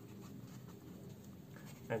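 Fine-tip felt pen writing a word on a sheet of paper on a clipboard: faint, quiet pen strokes on the paper.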